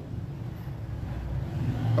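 A steady low background rumble, the kind a motor vehicle makes, fills a pause between spoken phrases; it grows louder near the end as a man's voice starts up again.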